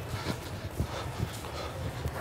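Footsteps on a hard floor, a soft knock about every half second, over a low steady hum.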